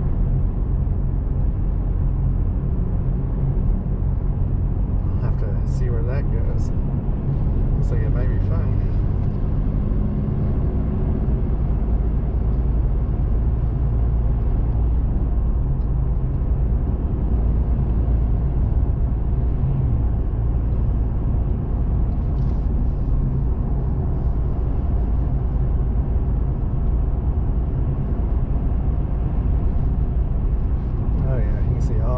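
Steady low road noise of a car cruising on a two-lane highway, with tyre rumble and engine drone heard from inside the cabin. A few brief faint sounds come between about five and nine seconds in.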